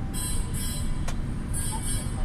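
Cab noise of a moving truck: a steady low engine and road rumble, with short high-pitched hissing whooshes coming about twice a second as it drives past a line of parked trucks.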